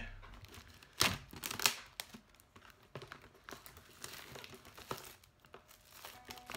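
Retail packaging being pulled open by hand: irregular crinkling and crackling, with two louder sharp rips or snaps about a second in.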